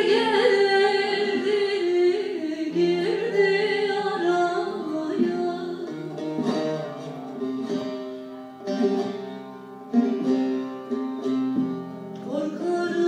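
Live Turkish folk song (türkü): a woman singing over an ensemble of long-necked lutes (bağlama, including a dede sazı). Her voice wavers with ornament near the start, and plucked saz notes stand out in the second half.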